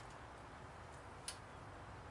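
Near quiet: a faint steady background hiss, broken once by a single short click a little past halfway.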